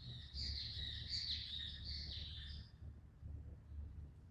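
A small bird chirping in a quick run of high notes that stops about two and a half seconds in, over a low background rumble.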